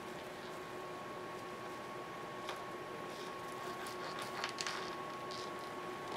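Faint clicks and taps of fingers handling and pressing small pieces of polymer clay, over a steady hum.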